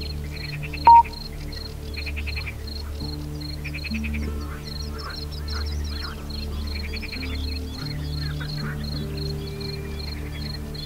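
Calm ambient music with soft held notes, laid over recorded nature sounds: a high chirp pulsing about three times a second and short rasping animal calls every second or two. A brief, loud, high beep sounds about a second in.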